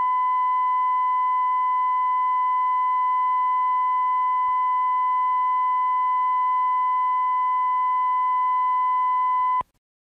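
Videotape bars-and-tone reference signal: a steady, single-pitch 1 kHz line-up tone held at an even level, which cuts off suddenly near the end.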